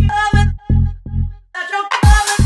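House music: a four-on-the-floor kick drum and bass pulsing about twice a second under a melodic hook. About three-quarters of the way through, the kick and bass drop out for a short break, leaving only the hook.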